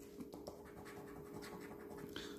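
A coin scratching the latex coating off a paper scratch card: a faint, continuous rasping.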